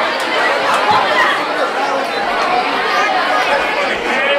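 Crowd of high-school students chattering, many voices talking over one another at once.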